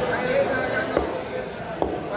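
Two heavy knife chops through grouper onto a wooden chopping block, about a second in and again near the end, over background chatter.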